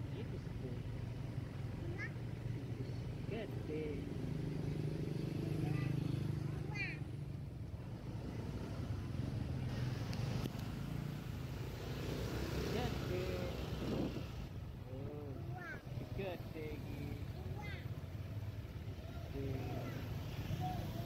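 Steady low engine rumble of buses and street traffic, with people's voices in the background.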